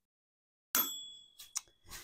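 Microwave oven's end-of-timer bell dings once, about a second in, a bright ring that dies away over about a second: the heating cycle has finished. A few light clicks follow.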